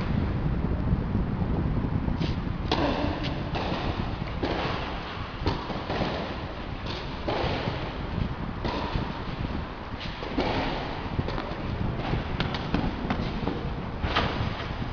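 Tennis balls being struck and bouncing on an indoor clay court, irregular sharp knocks with shoes scuffing and sliding on the clay between them, over a steady low rumble.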